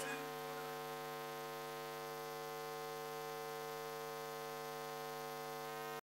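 A steady electrical hum at one unchanging pitch, with a row of buzzy overtones above it.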